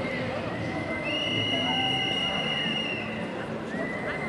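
Several whistles blown in long, steady blasts that overlap, one starting about a second in and holding for about two seconds, another near the end, over a background of voices.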